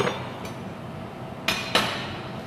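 Kitchenware clinking and knocking as it is handled at a metal counter: one knock right at the start, then two sharp clinks a quarter of a second apart about one and a half seconds in, each with a short ring.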